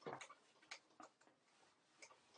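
Whiteboard eraser wiping across the board: one short faint rubbing stroke at the start, then a few light ticks.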